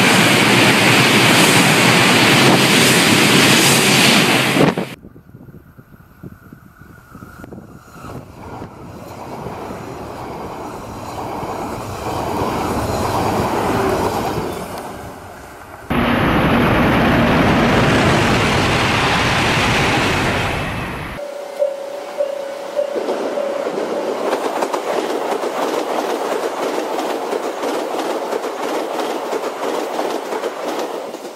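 Train running on rails, wheels clattering over the track. The sound changes abruptly several times: it drops suddenly about five seconds in, builds slowly, jumps back up loud about sixteen seconds in, and thins out near twenty-one seconds, where a steady tone sounds for a couple of seconds.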